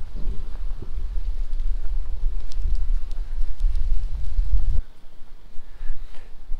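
Wind buffeting the body-worn camera's microphone: a loud low rumble that cuts off suddenly near the end.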